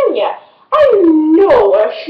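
A person's voice making wordless howling calls that slide up and down in pitch, with a short break about half a second in.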